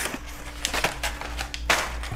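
Crumpled brown kraft packing paper rustling and crackling as it is lifted out of a cardboard shipping box. It comes as a handful of separate crinkles, the loudest near the end.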